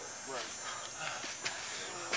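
Faint background voices, with a couple of light clicks or knocks.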